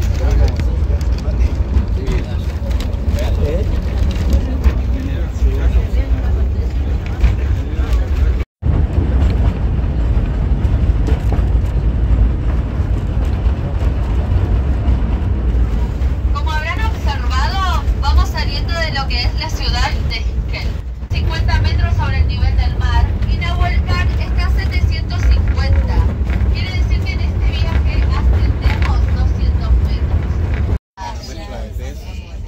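Steady low rumble of a moving narrow-gauge passenger train heard from on board, with indistinct voices joining in the second half.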